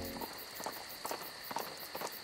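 Faint horse hooves clip-clopping: a handful of irregular hoof strikes about half a second apart.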